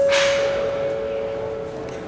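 Two-note electronic chime: a held higher note joined about half a second in by a slightly lower one, both slowly fading away near the end.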